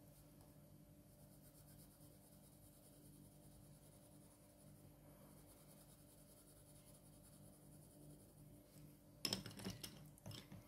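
Very faint graphite pencil strokes on drawing paper, shading in soft strokes over a low steady hum. Near the end comes a brief louder burst of clicks and rustling as the hand comes off the paper.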